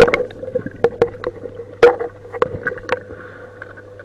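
Muffled underwater sound of a swimming pool: scattered sharp clicks and knocks from bubbles and moving water over a steady hum, with the loudest knocks at the very start and just under two seconds in.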